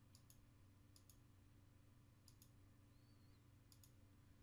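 Faint computer mouse button clicks, four in all, roughly a second or more apart. Each is a quick pair of ticks, over a low steady hum.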